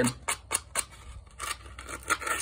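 Sandpaper rubbed by hand against a small engine's valve in a run of short, irregular scratching strokes, cleaning the deposits off it so it won't stick.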